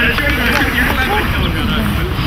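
Voices talking indistinctly over a steady low rumble.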